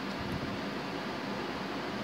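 Steady room background noise: an even hiss with a faint low hum and no distinct events.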